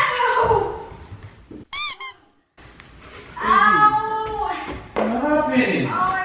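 A woman moaning and whimpering without words, as if hurt from a fall down the stairs, though the fall is faked. A brief run of high-pitched squeaks comes about two seconds in.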